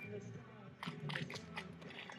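Shoes scuffing and tapping on a paved surface: a quick run of short, crunchy scrapes and taps about halfway through, over a low background murmur.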